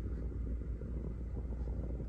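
Steady low rumble inside a parked car's cabin, with no speech over it.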